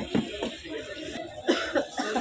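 A person coughing several times in short, sharp bursts, with crowd chatter around.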